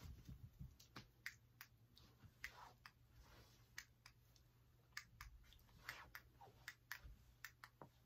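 Near silence with faint, scattered short clicks and taps at irregular intervals, from small plastic parts being handled.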